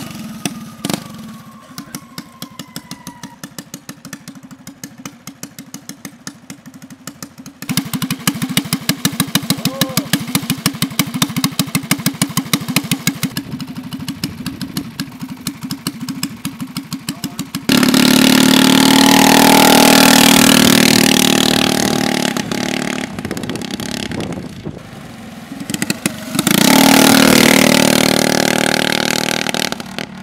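Homemade go-kart's small gasoline engine running at low revs with slow, evenly spaced beats, picking up speed about eight seconds in. It then revs hard twice, once from about eighteen seconds in and again near the end.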